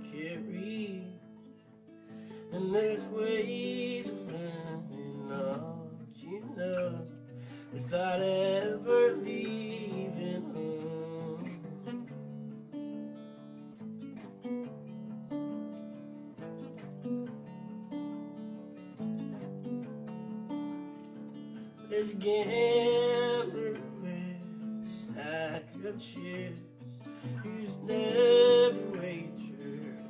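Solo acoustic guitar, fingerpicked, with a man singing in a few phrases and the guitar playing alone in between.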